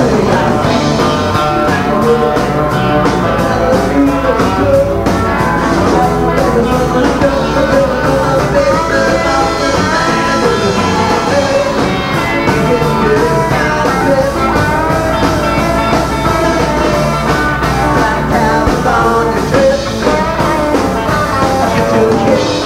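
A rock band playing live: a drum kit keeping a steady beat under guitars and bass, at a constant loud level.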